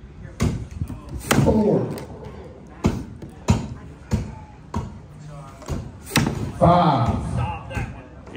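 Axe blows into a wooden log block in an underhand chop: a series of sharp chopping knocks, spaced about half a second to a second and a half apart, each one an axe strike landing in the wood. Voices can be heard between the blows.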